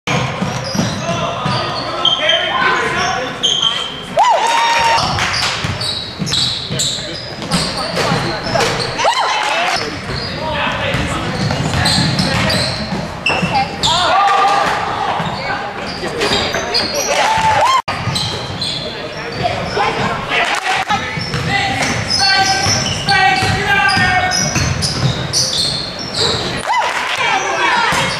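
Gym sound of a youth basketball game: a basketball bouncing on the hardwood, with players and spectators shouting indistinctly, all echoing in the hall.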